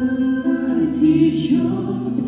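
A woman singing long held notes of a song, accompanied by acoustic guitar.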